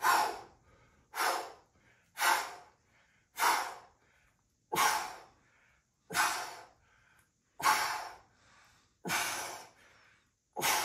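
A man breathing hard through a set of dumbbell hammer curls: about eight sharp, forceful exhales, roughly one every second and a half, each starting suddenly and trailing off.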